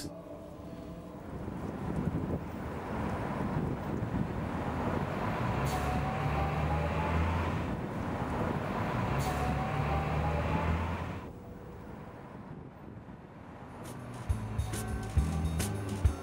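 City street ambience with traffic noise, swelling as vehicles pass, with the low hum of a heavy vehicle's engine and two faint rising whines in the middle. Music comes in near the end.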